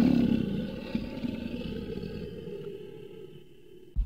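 A roaring creature sound effect, strongest at the start and fading away over about three seconds. A short click comes at the very end.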